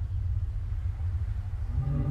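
A deep cinematic rumble, part of the trailer's sound design, slowly swells in loudness, and a low sustained droning note joins it near the end.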